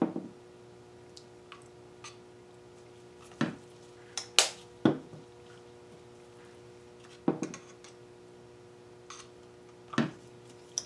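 Plastic squeeze bottles of acrylic pouring paint being handled: about half a dozen short sharp clicks and knocks, spaced irregularly, as caps are snapped and bottles are set down on the table, over a faint steady hum.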